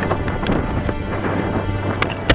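Wind rushing over the microphone of a rocket-mounted camera as a model rocket descends under its parachute, with scattered light clicks and rattles. Music plays underneath.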